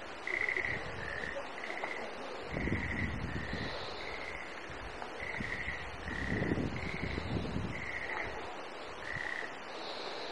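Frogs calling in a steady series of short, clear, whistle-like notes, about one a second, the notes alternating slightly in pitch. Twice, a burst of low rumble.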